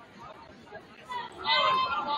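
Gymnasium chatter from people in the stands, fairly quiet at first. About a second and a half in, a voice calls out loudly over it.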